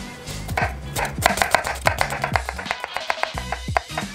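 Chef's knife slicing a halved onion on a wooden cutting board: a quick run of crisp strokes, about six a second, starting about a second in and running until just before the end. Background music with a beat plays underneath.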